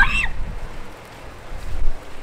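A person's short, high-pitched shriek that rises steeply in pitch, right at the start, the yelp of someone startled. A low rumble follows, swelling to a peak near the end.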